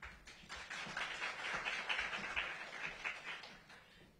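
Audience applauding: many quick claps that build about half a second in and fade away near the end.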